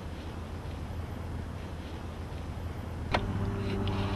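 Sharp wooden click from the back of a large-format wooden view camera as the ground glass frame is worked loose, about three seconds in, over a low background rumble. A steady low drone sets in with the click and runs on.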